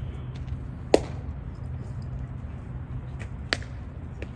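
A pitched baseball popping loudly into the catcher's mitt about a second in, followed near the end by a second, fainter snap, over a steady low outdoor rumble.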